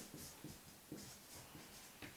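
Marker pen writing on a whiteboard: a series of short, faint strokes as a word is written out.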